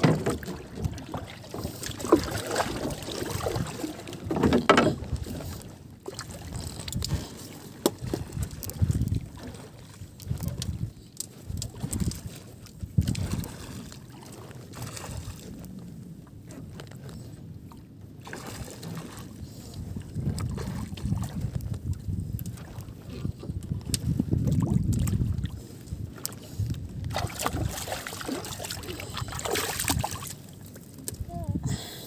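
Water lapping and sloshing against the hull of a small outrigger boat on open sea, in uneven low surges, with wind buffeting the microphone.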